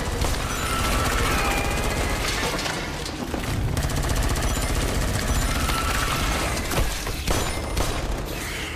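Film action soundtrack: sustained rapid gunfire mixed with a music score, with a few short held tones rising above the dense crackle.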